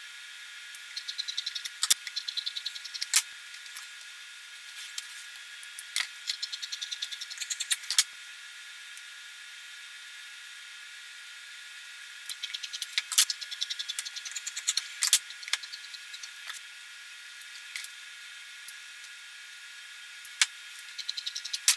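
Scissors cutting through shirt fabric in several runs of quick snips, each run ending in a sharper snap, with quiet pauses between runs while the fabric is handled.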